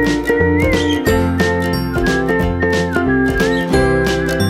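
Background music: a light tune with a whistled melody over chiming bells and a steady beat.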